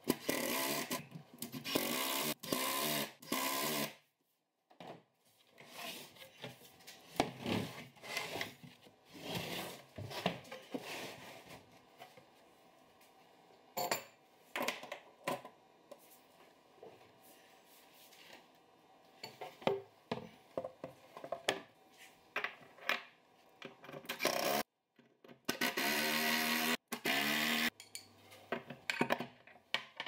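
Cordless driver spinning screws into a plywood cabinet floor in three short runs of motor whine. This is followed by scattered clicks and rubbing as metal lazy-susan pivot hardware is handled and set in place, and near the end the driver runs again for a couple of seconds.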